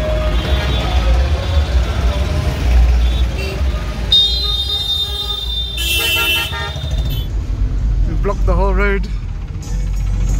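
Slow street traffic of tractors, motorbikes and cars: a steady low engine and road rumble, with a long high-pitched horn toot about four seconds in, a second harsher horn blast around six seconds, and a warbling tone near the end.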